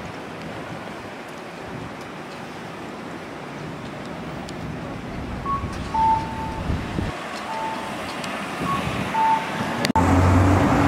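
City street traffic: a steady wash of passing cars, with one vehicle swelling past about seven seconds in. In the second half, a series of short electronic beeps at two alternating pitches.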